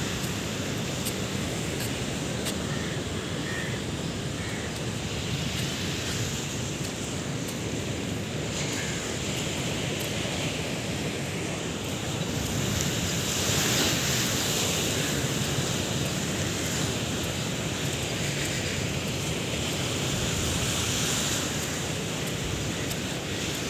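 Steady wash of sea surf with wind buffeting the microphone, growing louder for a couple of seconds a little past halfway.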